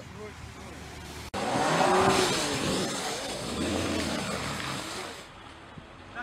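BMW X6 xDrive engine revving hard with its wheels spinning in deep snow, starting abruptly about a second in and easing off near the end.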